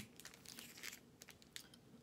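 Faint crinkling and light clicks of a clear plastic outer sleeve on a vinyl LP as the record is handled and turned over.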